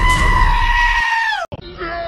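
A cartoon goat's long, loud scream, held on one pitch and sagging at the end, cut off abruptly about one and a half seconds in. A long yell on a single held note follows at once.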